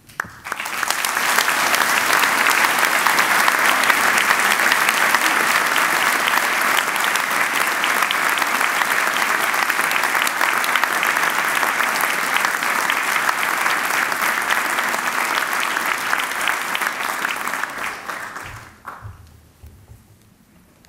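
Audience applauding: a steady wash of clapping that starts about half a second in and dies away near the end.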